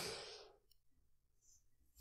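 A man's soft, breathy sigh trailing off and fading out within the first half second, then near silence.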